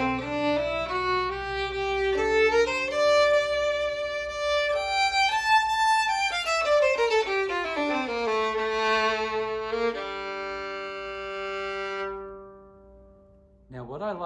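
A Schumann Prodigy 4/4 violin played with the bow: a run of notes climbs about two octaves and comes back down, then ends on a long low note that rings on and dies away near the end.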